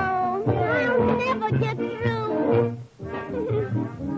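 Orchestral cartoon score with wavering, downward-sliding melody lines over a pulsing bass, the slides sounding cat-like, like a muted brass meow.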